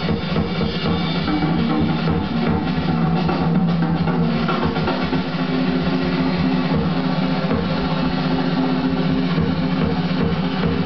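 Fast jazz drum-kit feature with busy bass drum and snare and the band playing under it, played back from a vinyl record.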